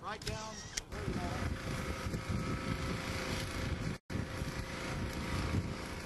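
A steady low rumble of an engine running, most likely the crane lowering the bridge panel. It follows a man's brief exclamation, and the sound cuts out completely for an instant about four seconds in.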